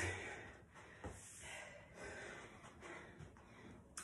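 Faint heavy breathing, a few breaths, from people catching their breath between sets of a hard workout, with a couple of faint knocks.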